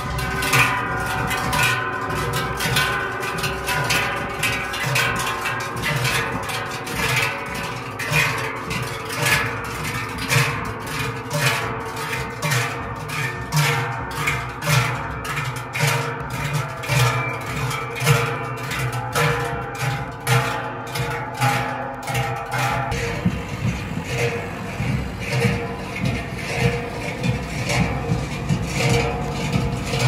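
Large Swiss cowbells (Treicheln) swung in unison by a marching group, a continuous rhythmic clanging with many overlapping ringing tones.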